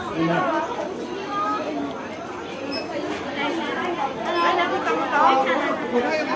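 Indistinct chatter of several people talking at once, with voices overlapping.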